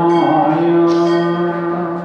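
A man chanting a Sanskrit hymn, holding one long steady note with a slight change of vowel about a second in.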